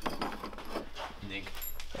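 Small clicks and light metallic rattles as a wire-caged work light is handled and turned around, over a low steady hum.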